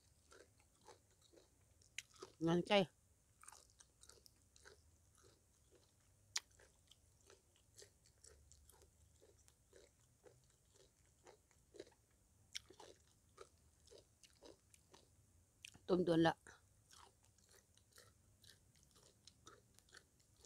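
Close-up chewing of som tam (Thai papaya salad) with raw cauliflower and crisp pieces: a steady run of small wet crunches and mouth clicks, about two to three a second. A short vocal sound breaks in about 2.5 s and again about 16 s in.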